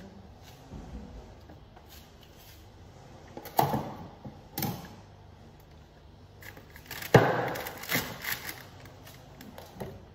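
Containers knocking and clattering as they are moved about inside a refrigerator: two knocks around three and a half and four and a half seconds in, then a sharp clunk about seven seconds in followed by a second or so of rustling and knocking.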